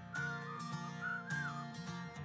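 Light background music: a whistled tune sliding between notes over plucked string chords.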